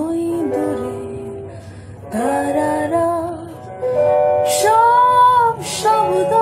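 A woman singing a Bengali song to electric guitar accompaniment, in phrases that slide into their notes, with one long held note in the second half.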